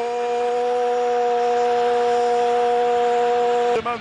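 A football commentator's long sustained shout, held on one steady note for nearly four seconds after a short upward slide, over crowd noise.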